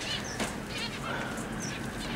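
Caged finches calling: scattered short, high chirps, with one longer, lower call about halfway through.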